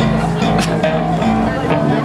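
Amplified guitar, bass and keyboard notes from the stage during a soundcheck, with a few sharp cymbal-like hits.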